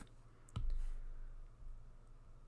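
A sharp click about half a second in, followed by a soft hiss that fades over about a second, against a faint low hum.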